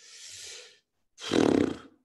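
A man's exasperated vocal sound: a breathy exhale, then about a second in a louder, voiced groan.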